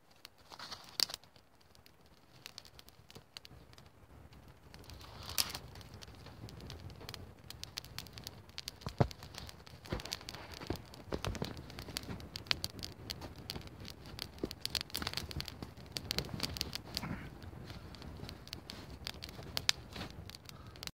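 Small fire of dry twigs and tinder crackling and popping as it catches and builds. The pops come sparsely at first and grow thicker and louder after about five seconds as the flames take hold.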